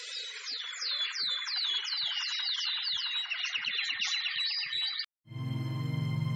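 Birdsong: a dense chorus of chirping with one bird's repeated falling whistles, about three a second. It cuts off abruptly about five seconds in, and after a short gap a steady sustained music chord with a low drone begins.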